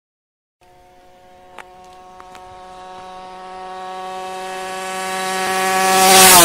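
2008 Aprilia SX 50's two-stroke engine with an SCR Corse exhaust, held at high, steady revs on a flat-out run as the bike approaches, growing steadily louder from faint.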